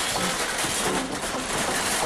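Wire shopping cart rattling as it is pushed over the sidewalk, a steady clattering noise, with a faint musical beat of low notes about twice a second underneath.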